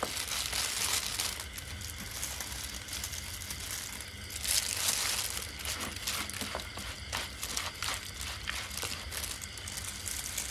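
Sliced shallots being mixed by hand into sliced raw beef in a plastic bowl: a steady wet rustling, louder for about a second near the middle.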